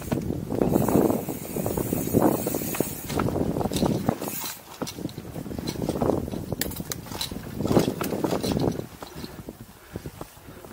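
Mountain bike riding down a forest trail: tyres rolling and the bike rattling and clicking over bumps, with wind buffeting the helmet-camera microphone in repeated swells.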